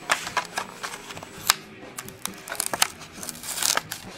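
A Hot Wheels blister pack being opened by hand: the clear plastic blister crackles and crinkles and the cardboard card tears. It comes as an irregular run of sharp clicks and snaps, with one louder snap about a second and a half in.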